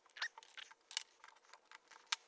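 Faint, light clicks and scrapes of metal parts as a Holley 94 two-barrel carburetor is handled and its fittings worked by hand, a dozen or so small ticks spread unevenly through the moment.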